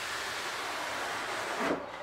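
Cardboard rubbing on cardboard as a product box is slid out of its shipping box: a steady scraping hiss, ending with a short knock near the end as it comes free.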